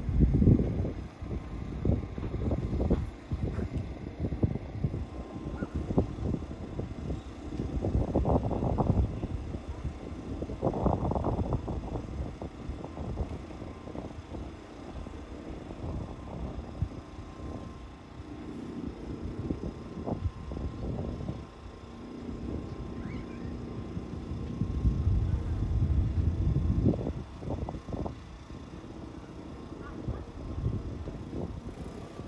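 Wind buffeting the microphone in irregular gusts, a low rumbling noise that surges and dies away several times.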